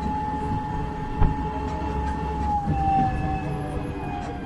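Sabino Canyon crawler tram driving, its drivetrain giving a steady whine over a low rumble, with one knock a little past a second in. Near the end the whine slides down in pitch as the tram slows toward its stop.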